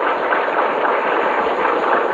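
Audience applauding steadily, the dense clatter of many hands clapping.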